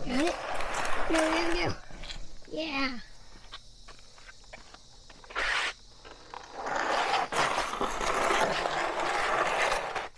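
Plastic snow sled scraping across concrete as it is dragged by a rope under a giant watermelon, in two long pulls with a short scrape between them. A man's effortful grunts and groans in the first few seconds.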